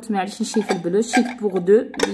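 Dishes clinking lightly against each other as they are handled, under continuous talking.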